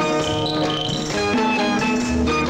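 Instrumental break of a 1980s Bollywood film song: band backing with a steady beat and held melodic notes, no singing.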